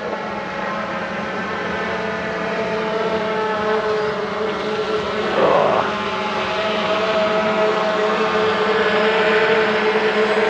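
Camera drone hovering overhead: a steady, many-toned propeller hum that grows slowly louder, with a brief rustle about five and a half seconds in.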